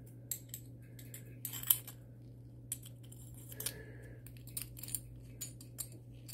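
Small metallic clicks and scrapes as a circuit board is worked back into a small metal enclosure by hand, with a sharper click a little under two seconds in, over a steady low hum.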